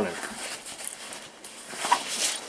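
Faint rustling of a hi-vis work jacket's fabric as it is pushed about on its hanger.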